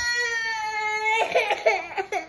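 A young child crying: one long, steady high-pitched wail that breaks into choppy sobs about a second in.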